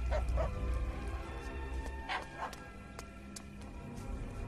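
A small dog barking a few short yaps over soft orchestral background music.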